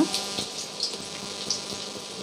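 Hot oil bubbling and crackling as marinated chicken kebab pieces deep-fry in a steel kadai.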